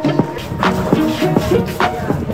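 Background music: a short melody with sharp percussive hits.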